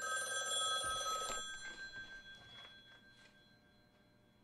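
Corded telephone's bell ringing once for about a second and a half, its ringing tones dying away over the following couple of seconds.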